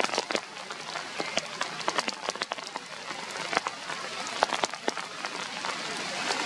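Rain falling on leaves: a steady hiss with many irregular sharp taps of drops.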